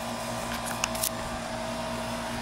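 A steady mechanical hum made of several fixed tones, with a few faint ticks a little under a second in.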